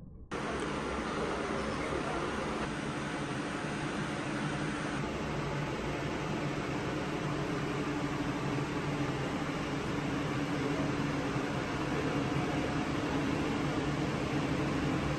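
Steady mechanical hum and rush of air from a cooling or ventilation unit, with a faint low drone, cutting in abruptly just after the start.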